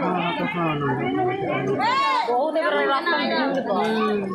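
A crowd of people talking over one another, with several voices close by and one voice rising and falling in pitch about two seconds in.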